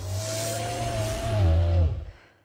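Film sound effect of a giant serpent creature's roar: a deep rumble under a high held tone that bends down near the end, then cuts off suddenly.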